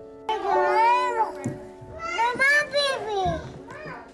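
A young child's high voice calling out twice in long rising-and-falling sounds, over soft background music with sustained guitar notes.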